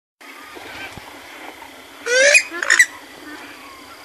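Bird calls in a reedy wetland: two loud calls about two seconds in, each rising slightly in pitch, with fainter calls around them.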